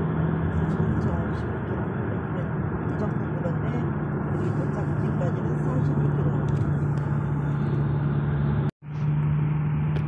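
Car being driven along a road, heard from inside the cabin: a steady drone of engine and tyre noise with a constant low hum. It cuts out for a split second a little before the end, then carries on.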